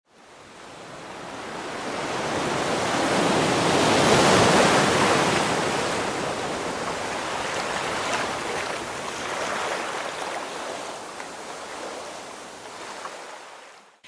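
Intro sound effect for an animated logo: a rushing whoosh like surf that swells for about four seconds, then fades slowly away, with a few faint high glints partway through.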